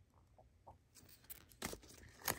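A folded paper instruction leaflet being handled: quiet rustles and light clicks start about a second in, after a near-silent first second.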